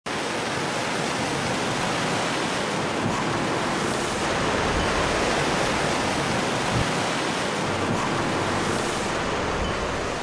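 A steady rushing water sound like surf, swelling a little in the middle.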